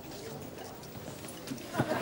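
Faint canteen background with light footsteps and small knocks. A burst of studio audience laughter breaks out right at the end.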